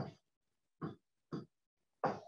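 Three short voiced sounds from a person, brief syllables at the start, just under a second in and near the middle, with silence between them.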